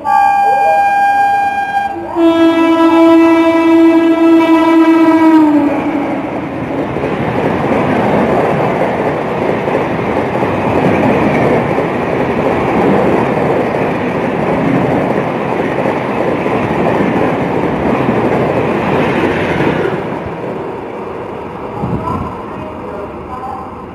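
A passing express train's locomotive horn sounds a high note for about two seconds, then a lower, longer note that drops in pitch as the locomotive goes by. The coaches then run through at speed, a steady loud rush of wheels on rails that dies away near the end.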